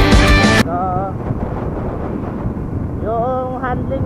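Background music that cuts off suddenly under a second in, giving way to the riding sound of a Bajaj CT100 single-cylinder motorcycle under way, with wind rushing over the microphone. Two short wavering vocal sounds from the rider come through, about a second in and again near three seconds.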